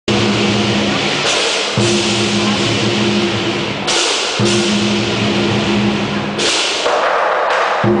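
Chinese lion dance percussion ensemble: a large lion drum beaten with cymbals clashing continuously over it. The accompaniment is loud and unbroken, its pattern shifting in phrases every two to three seconds.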